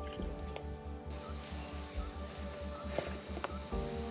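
High-pitched, steady insect chorus that starts suddenly about a second in, over soft background music.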